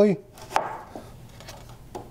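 A cedar 2x4 ledger board knocking against the wooden frame boards as it is set and adjusted into position: one sharp wooden knock about half a second in and a fainter one near the end.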